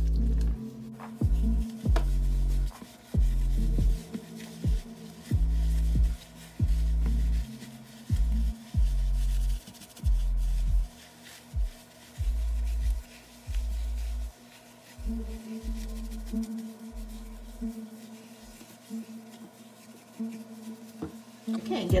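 Background electronic music with deep, pulsing bass notes over a steady pattern of tones. The bass drops out for a few seconds near the end, then comes back.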